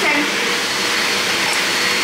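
Tap water running steadily into a sink, a constant rushing noise.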